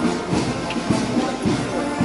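Marching band music with a steady beat, a little under two beats a second.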